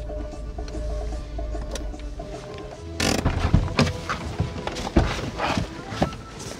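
Background music with a steady beat that cuts off abruptly about halfway through. It is followed by a car door being opened and a person climbing out of the car: a run of clicks, knocks and rustles, loudest about two seconds after the music stops.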